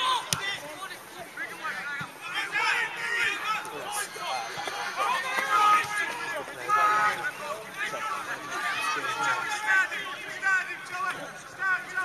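Indistinct voices of spectators and players on a football pitch: chatter and calls with no clear words, with one sharp click near the start.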